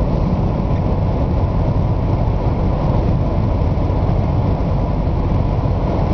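Steady tyre and engine noise heard inside a car's cabin while driving on a motorway, deep and even with no change in pitch or level.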